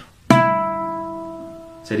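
Requinto guitar: a single pick stroke on the third string at the fourth fret, the closing note of a pasillo ornament. It strikes sharply about a third of a second in and rings out, slowly fading.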